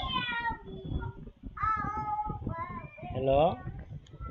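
High-pitched, drawn-out vocal calls coming through a video-call connection, with one rising call about three seconds in.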